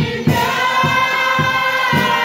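A congregation singing a gospel chorus together, several voices holding long notes, over a steady low beat about twice a second.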